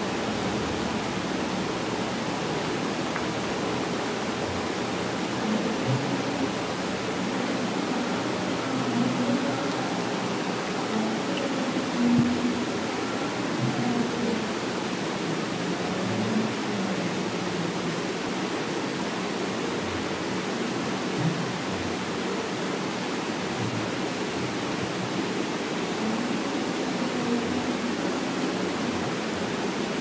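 Steady background hiss from the recording microphone, with a few faint low sounds.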